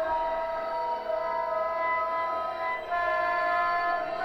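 Contemporary music for oboe and electronics: a long held tone with several pitches sounding together, shifting slightly about three seconds in.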